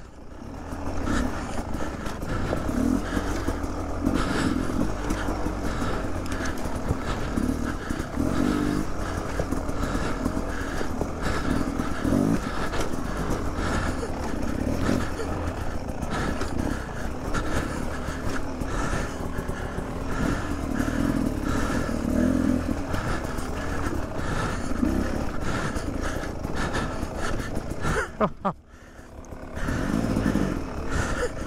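Beta 300 RR two-stroke dirt bike engine running at low, varying revs as it lugs over rocks. It drops away briefly near the end.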